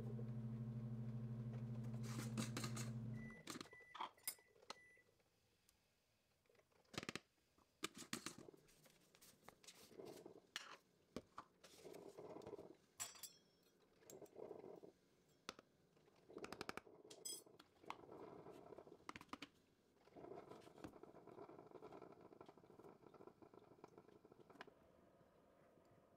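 A steady appliance hum stops about three seconds in and is followed by a few short electronic beeps. Then come faint clinks, taps and scrapes of a plastic scoop, lids and containers as powders are measured into a ceramic bowl on a kitchen counter.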